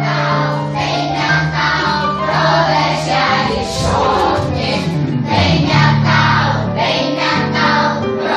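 Music: a group of voices singing together, children's voices among them, over sustained low accompanying tones.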